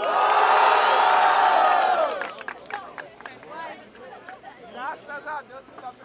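Crowd of young people cheering and shouting loudly for about two seconds, their vote by noise for one of two battle MCs, then dying down into scattered voices and chatter.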